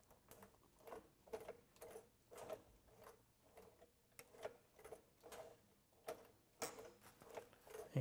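Sailrite walking-foot sewing machine turned slowly by hand, stitch by stitch, in reverse over a plastic zipper: faint mechanical clicks about twice a second as the needle and feet cycle.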